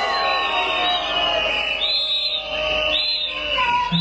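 A crowd whistling in disapproval, many shrill whistles at different pitches sounding over one another.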